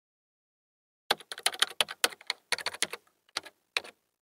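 Computer keyboard typing: after a second of silence, quick runs of sharp key clicks in uneven bursts.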